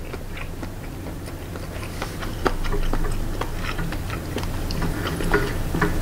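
A person chewing a mouthful of rice with crunchy fried-garlic chili crisp: irregular small crunches and clicks from the mouth.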